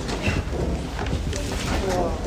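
Indistinct voices, too unclear to make out words, over a steady low hum of room noise.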